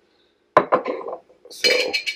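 Kitchenware clinking on a granite countertop: a sharp knock about half a second in, then a clink near the end that keeps ringing.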